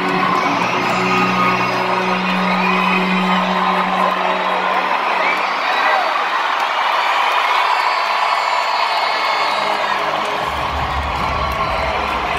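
Large arena crowd screaming and cheering over a low, sustained intro-music tone that fades out about halfway through. A deep bass note enters near the end.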